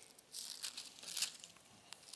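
Thin Bible pages being turned, a few soft paper rustles through the first second and a half and another brief one near the end.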